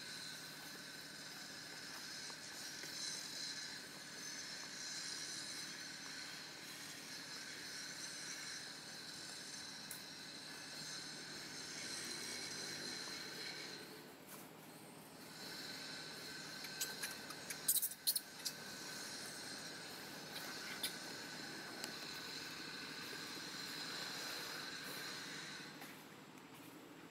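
Steady high-pitched drone of insects in the surrounding forest, briefly dropping out about halfway through. A few sharp clicks or rustles stand out about two-thirds of the way in.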